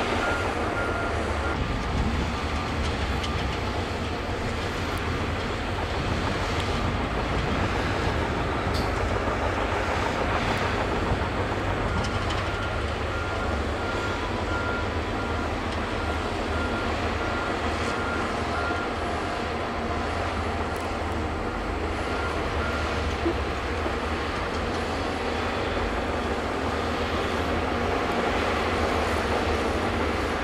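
Shantui crawler bulldozer's diesel engine running steadily under load as it pushes soil, with a strong low drone and the clatter of its steel tracks.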